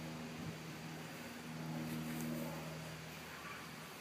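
Faint, steady mechanical hum of a distant motor, swelling a little for about a second in the middle.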